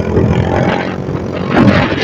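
Motorcycle engine running steadily while riding, under a continuous rush of wind and road noise.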